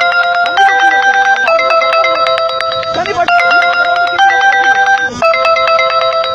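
Electronic background music: held synth chords that change about once a second over a fast, even ticking pulse, with faint voices underneath.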